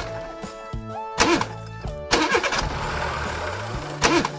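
Cartoon sound effect of a school bus engine being cranked and failing to start, over light background music. The cranking comes in suddenly about halfway through and does not catch: the engine has stalled.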